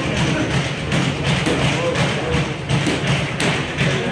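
Boxing gloves thudding against focus mitts and bodies during close-range pad work, a run of irregular punches several a second, with shoes shuffling on the ring canvas.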